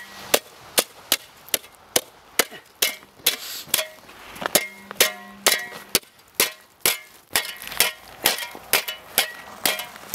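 A long-handled ice chopper's metal blade striking and scraping a layer of ice on a concrete sidewalk, breaking it up into slabs. The sharp strikes come about two to three a second, some with a brief metallic ring.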